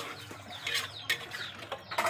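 A metal spatula scraping and stirring chicken pieces around a large wok, in a few short scrapes and knocks.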